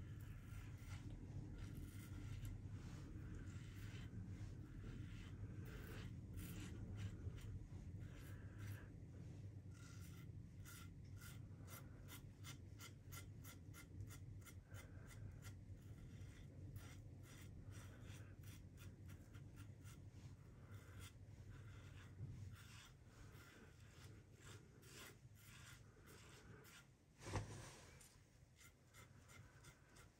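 Faint, quick scratchy strokes of a Gillette Rocket Flare double-edge safety razor cutting through lathered stubble on the first pass. The strokes come in short runs and thin out in the last few seconds, with one short louder sound near the end.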